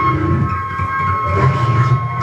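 Improvised electroacoustic music from double bass and electronics: steady high held tones over a dense, rumbling low texture.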